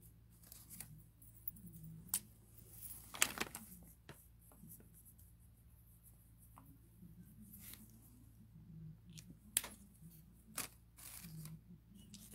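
Quiet, intermittent paper rustling with a few short rips and taps as a paper ticket is torn off and handled, the sharpest sounds about three seconds in and near ten seconds.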